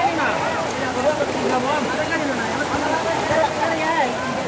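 Steady heavy rain, with several voices talking and calling over it.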